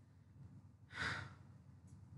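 A woman's single short breath out, a sigh, about a second in, over faint room tone.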